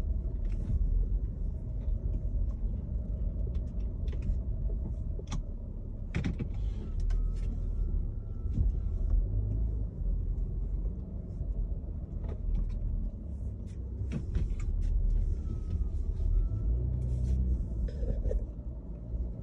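Steady low rumble of a car driving, heard from inside the cabin, with scattered small clicks and knocks.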